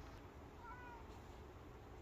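A domestic cat gives one short, faint meow about half a second in. It is the injured cat, which was attacked and left limping.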